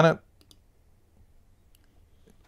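Faint, sharp clicks: two close together about half a second in and one more near the end, with near silence between them.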